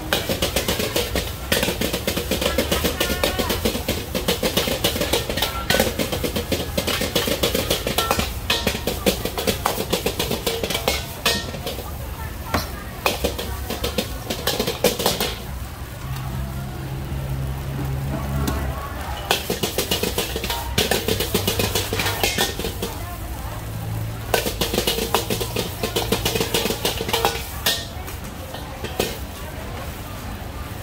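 Metal ladle repeatedly clanging and scraping against a wok as fried rice is stir-fried, in quick irregular strikes that ease off briefly a little past the middle, with voices in the background.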